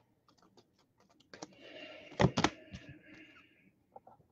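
Trading cards being handled and flipped through: a run of light clicks and a soft rustle, with two sharper clicks close together just after the middle.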